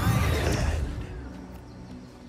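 Mixed film soundtracks: a deep rumbling swell with music comes in loud at the start and fades away over the next second and a half.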